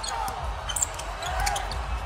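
A basketball being dribbled on a hardwood court, low repeated bounces, with faint voices in the background.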